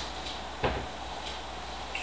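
A single short knock a little over half a second in, with a few fainter clicks, over a steady low hum.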